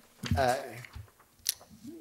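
A man's hesitant "uh" at a lectern microphone, then two short crisp clicks about a second and a second and a half in as he handles the paper sheets he is reading from.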